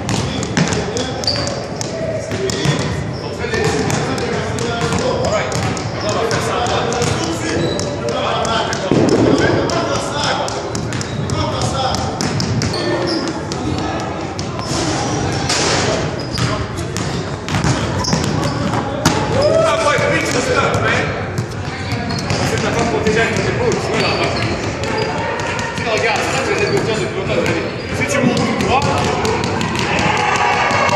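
Basketballs being dribbled on a hardwood gym floor, many quick bounces throughout, over indistinct voices in a large, echoing gym.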